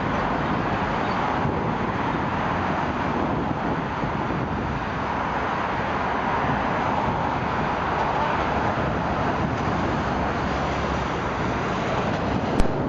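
Steady, rushing roar of a British Airways Boeing 747-400's four jet engines as it lands, mixed with wind and road traffic noise.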